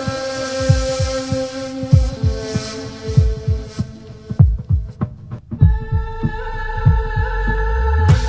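Background score: a held synth chord over deep, repeating bass thumps, about two a second. Just past halfway the chord briefly drops out and comes back on a new chord.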